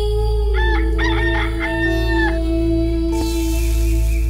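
A rooster crowing once, about half a second in and lasting nearly two seconds, over a steady ambient music drone. Near the end a high hiss begins, food sizzling in a hot pan.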